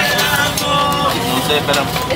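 Voices and music mixed together, with wavering sung or spoken pitches and a few short clicks.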